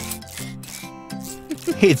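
Rapid rubbing, scraping sound effect of a wrench working inside a vehicle's engine, over background music with held chords.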